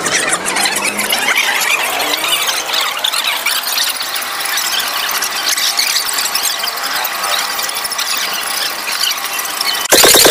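Live chickens squawking and squealing continuously in a dense, loud, high-pitched chorus as they are handed over by hand.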